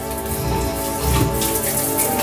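Steady rain, with background music of long held chords underneath.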